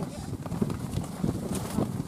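Indistinct, low mumbled talk from people close by, with no clear words.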